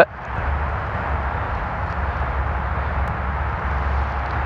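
Steady outdoor background noise: a low rumble with an even hiss and no distinct events.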